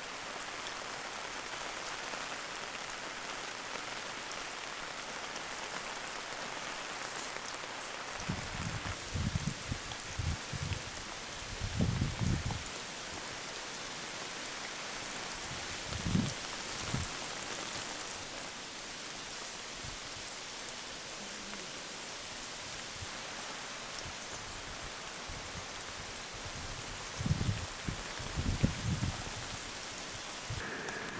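Steady rain falling on a tent tarp and gravel, an even hiss. A few short low thumps break through, in clusters about a third of the way in, around the middle and near the end.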